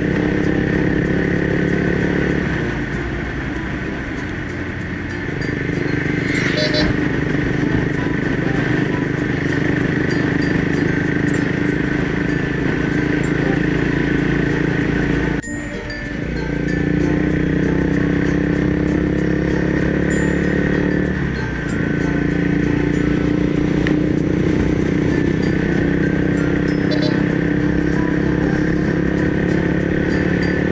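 Royal Enfield Thunderbird 350's single-cylinder engine running steadily at cruising speed under the rush of air. It eases off a few seconds in, then breaks off for a moment about halfway and picks up again.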